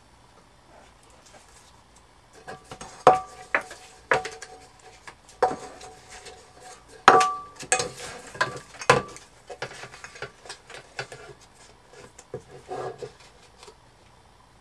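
Paper-covered tin can and tape roll being handled on a table: a series of irregular knocks and clicks, several with a short metallic ring, with softer rustling of tape and paper between them.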